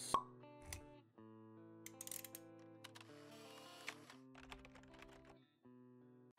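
Quiet intro jingle of soft sustained chords with light plucked notes and clicks, opening with a sharp pop.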